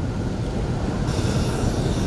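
Low rumble of an amplified microphone and hall between recited phrases. About a second in, a long airy in-breath is drawn close to the handheld microphone.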